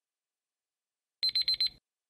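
Countdown timer alarm beeping as the timer hits zero: four quick high-pitched electronic beeps in about half a second, a bit over a second in.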